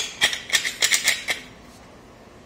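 A rapid run of light clicks and clatter, about eight in just over a second, then it stops: plastic and ceramic parts knocking as a toilet cistern lid and its plastic push-button flush assembly are handled.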